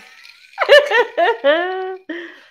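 A woman laughing heartily: a quick run of four or five loud "ha" pulses starting about half a second in, ending in one drawn-out high note.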